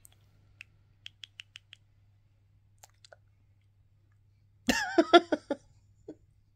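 Small mouth clicks from a woman pulling faces, with a quick run of five about a second in, then a short wordless vocal sound with a wavering pitch near the end.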